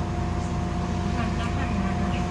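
Interior of an Irisbus Citelis 10.5 m CNG city bus: the drivetrain is running with a steady low rumble and a constant whine. Voices come in about a second in.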